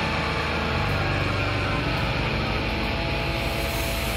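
Live grindcore band playing: a dense, loud wall of heavily distorted guitar and bass over very fast drumming.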